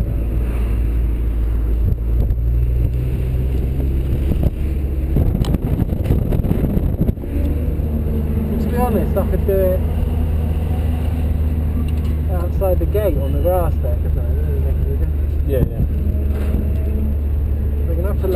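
Honda S2000's four-cylinder engine running steadily at low revs as the open-top car rolls slowly, with a brief rush of noise around five to seven seconds in.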